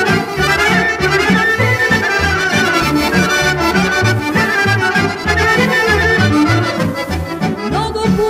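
Instrumental break of a Serbian folk song: an accordion carries the melody over a steady, even bass line of alternating notes.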